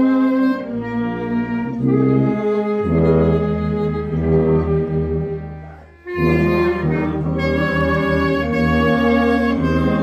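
A small ensemble of two violins, trombone, euphonium and tuba plays slow, held chords that change in steps. About six seconds in, the sound dies away to a brief pause, and then all the players come back in together on a new phrase.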